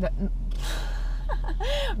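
A woman's loud breathy exhale about half a second in, then a short wordless vocal sound, over the steady low hum of a car cabin.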